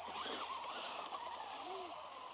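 Electric motor of a Helion Avenge 10MT XLR RC monster truck whining faintly as it drives over dirt, its pitch rising and falling once near the end.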